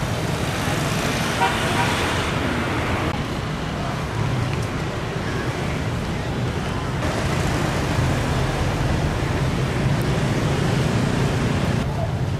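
Busy city street ambience: steady traffic noise with background voices, changing abruptly about three and seven seconds in.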